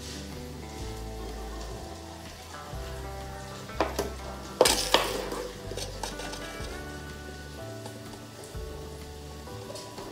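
A metal spoon scraping and scooping a thick paste in a stainless-steel pot, with sharp knocks of the spoon against the pot or a tub about four and five seconds in. Background music plays throughout.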